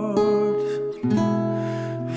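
Slow ballad accompaniment on strummed acoustic guitar between sung lines, with a fresh chord struck just after the start and a change of chord about a second in.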